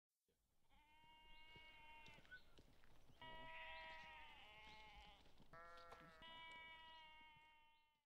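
Lambs bleating: four long, faint bleats, each held at a fairly even pitch.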